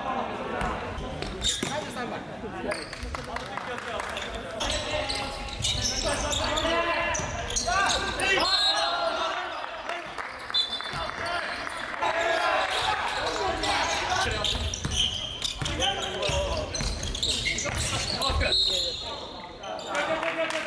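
A basketball bouncing on the wooden floor of a large gymnasium during a game, with the shouts of players mixed in.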